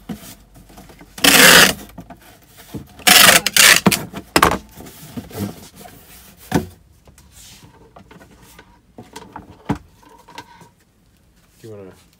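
Packing tape being pulled off a handheld tape gun onto a cardboard shipping box: two loud tape screeches, the second longer, followed by a few sharp clicks and knocks as the box is handled.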